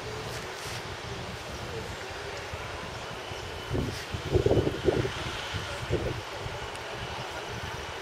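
Steady outdoor background noise with wind on the microphone. A few short, louder low sounds come about four to five seconds in and again near six seconds.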